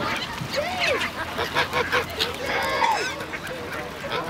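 A mixed flock of geese honking, many short overlapping calls throughout.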